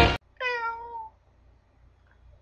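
Music cuts off abruptly, then a domestic cat gives one meow lasting under a second that drops a little in pitch at the end.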